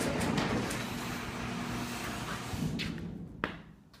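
Genie Intellicode garage door opener running the door after a remote press, a steady mechanical rumble with a low hum, stopping with a click about three and a half seconds in.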